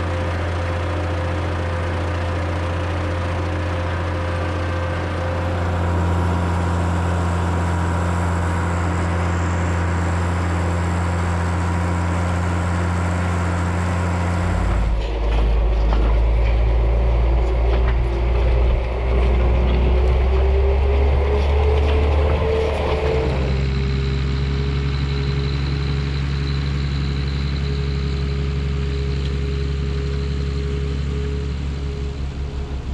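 Case IH 1455 tractor's diesel engine running steadily under load while it pulls a trailed field sprayer. The sound changes abruptly about halfway through. A whine then rises gradually in pitch for a few seconds before settling.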